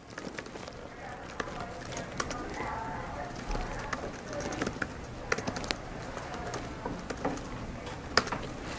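Laptop keyboard keys clicking in irregular runs, with a faint murmur of voices underneath.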